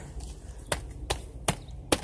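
Footsteps on a brick path: four short, sharp steps evenly spaced, a quick walking pace.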